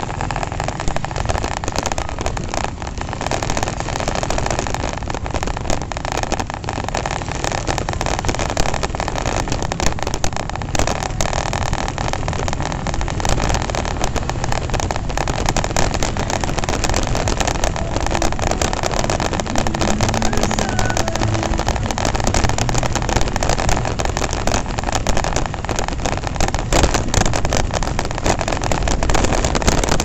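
Riding noise from a Honda Revo FI motorcycle under way: its single-cylinder engine running together with rumbling wind and road noise on the microphone, steady throughout.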